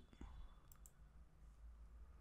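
Near silence: room tone with a couple of faint computer mouse clicks early on.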